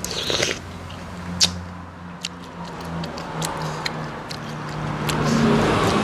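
Close-up chewing and crunching of a mouthful of spicy papaya salad, with scattered sharp clicks, the loudest about a second and a half in. A low hum comes and goes underneath, and the chewing noise grows in the last couple of seconds.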